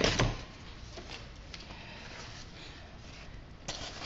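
Scrapbook layout pages being handled and set down: a thump right at the start, then quiet handling noise with a few light taps and a sharper tap shortly before the end.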